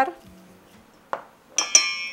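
A metal spoon clinking against a stainless steel mixing bowl, which rings briefly with a bright, high tone, about halfway through; a faint click comes just before it.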